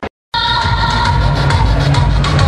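A brief dropout where the recording cuts, then loud music with a heavy bass beat and a held high note over it.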